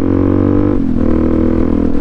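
Suzuki DR-Z400SM's single-cylinder four-stroke engine running steadily under way, a loud drone whose pitch dips briefly just under a second in and then holds steady.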